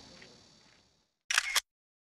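Faint outdoor ambience fades out into dead silence, then a camera shutter sound plays once, a loud double click lasting about a third of a second.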